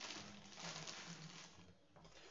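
Nearly quiet background: a faint even hiss with a faint low hum, fading a little toward the end.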